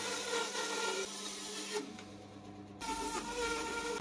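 A bandsaw running with a steady buzzing hum as its blade cuts a small wooden block along a traced figure outline. The tone shifts about two-thirds of the way in.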